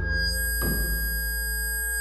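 Live electronic music through PA speakers: several steady, pure sine-like tones held over a low drone, with a new struck attack about half a second in that brings in a fresh set of tones.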